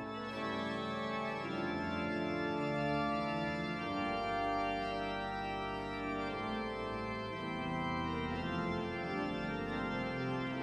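Pipe organ playing slow, sustained chords, with a deep pedal bass note coming in about four seconds in.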